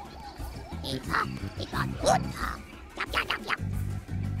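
Background music with a steady low pulse, and a run of short, high, squeaky chattering calls from Ewoks in the middle of it.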